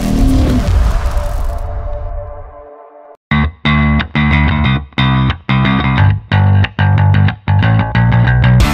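A swelling whoosh effect with a falling sweep fades out over the first three seconds. After a brief silence, distorted electric-guitar rock music comes in with a hard, stop-start rhythm.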